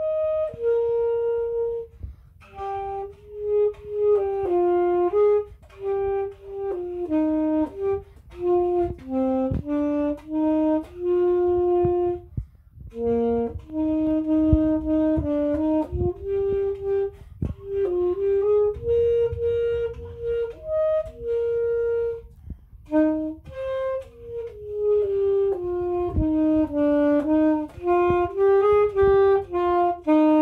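Alto saxophone played by a child, working through a lesson exercise: a simple melody of single held notes in short phrases, with brief breaks for breath between them.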